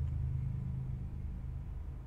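Steady low hum with no speech, in a gap in played-back video audio.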